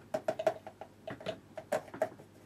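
Light, irregular clicks and taps of a paintbrush knocking against a paint palette as watercolour is picked up and mixed, about a dozen in under two seconds.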